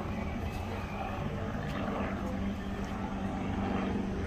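A steady low engine drone with a constant hum.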